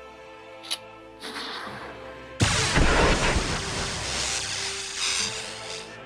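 Action-film sound effects over background music: a short click, a brief whoosh, then a sudden loud blast about two and a half seconds in that dies away over about three seconds.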